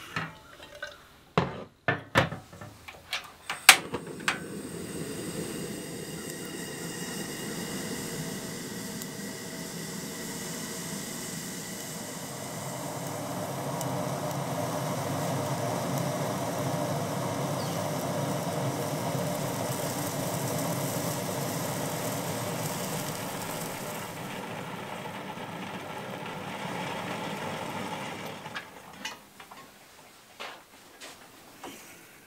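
A few clanks of a metal kettle being handled and set down, then the steady hiss of a portable canister gas stove's burner heating the kettle of water, a little louder midway and stopping suddenly near the end.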